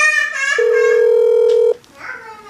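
Outgoing WhatsApp voice call ringing through a smartphone speaker while the call is placed. A brief high tone comes first, then one steady ringback tone of a little over a second that cuts off sharply.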